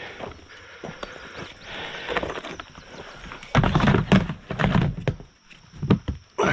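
A plastic storage tote being handled and its plastic lid set on and pressed shut: a few faint clicks, then a run of loud knocks and thumps between about three and a half and five seconds in.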